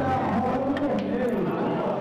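Chatter of onlookers around a pool table, with a few faint clicks about a second in as the cue strikes the cue ball and it hits another ball.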